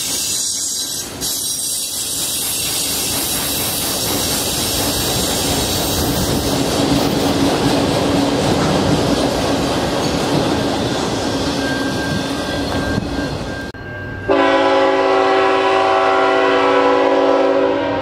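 Freight cars rolling past with steady wheel-and-rail noise and thin wheel squeal, the sound easing as the end of the train goes by. After a short break, a diesel locomotive's multi-chime air horn sounds one long, loud, steady chord.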